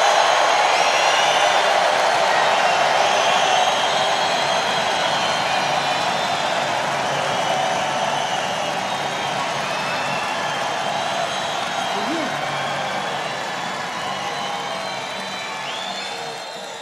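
Large arena crowd cheering and applauding, with whistles cutting through, slowly dying down.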